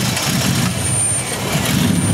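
A 2001 Dodge Grand Caravan's 3.3-litre V6 engine running unevenly just after being started, with a thin high whine joining in about a third of the way through. The engine has a number five fuel injector stuck open, because its control wire is shorted to ground, so raw fuel is flooding that cylinder.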